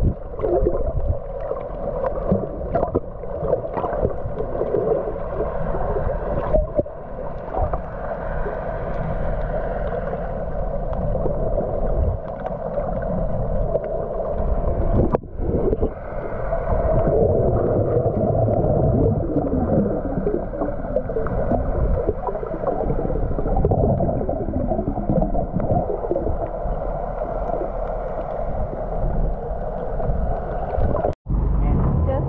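Muffled underwater sound from a camera held below the surface while snorkelling: water gurgling and swirling over a low, steady drone, with a brief break about halfway through.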